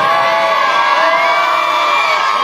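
A crowd of young men and boys cheering with one long, held shout.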